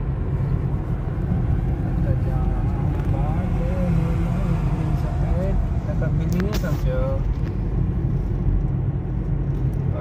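Steady low rumble of a car's road and engine noise heard from inside the cabin while driving, with a person's voice talking in the middle of the stretch.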